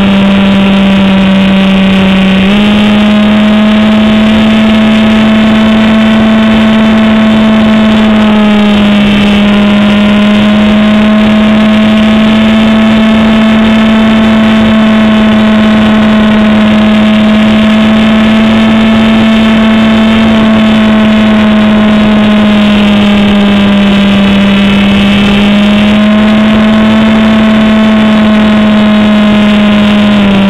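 Motor and propeller of a radio-controlled P-51 Mustang model in flight, picked up close by the onboard camera: a loud, steady buzzing drone. Its pitch steps up and down a little a few times with throttle changes.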